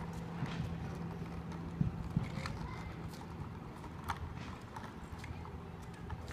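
Irregular light clicks and knocks scattered over a steady low hum, typical of hard surfaces being struck or rolled over outdoors.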